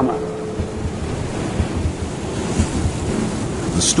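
A steady rushing wash of ocean waves and wind, with no separate events standing out.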